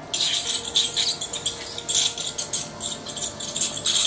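Corded dental scaler working over a dog's teeth, removing tartar during a scaling: a high-pitched scraping and rattling in short, uneven bursts.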